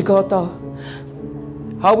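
Soft background music of sustained held chords, with the chord changing about a second in, under a man preaching into a microphone in short bursts at the start and near the end.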